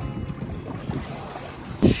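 Wind buffeting the microphone in an uneven low rumble, over the faint wash of shallow sea water. A brief louder burst comes near the end.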